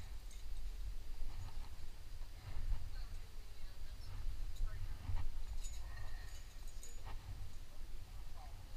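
A climber's hands and shoes scuffing and tapping on the rock, a few faint taps, over a steady low rumble on the body-mounted camera's microphone.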